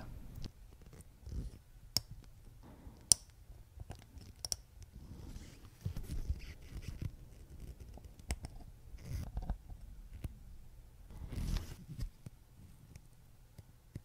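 Close-miked handling of small steel watchmaking tools on a watch movement as end stones are set under their KIF shock springs. It is faint, with several light clicks, the sharpest about three seconds in, and soft rubbing and scraping between them.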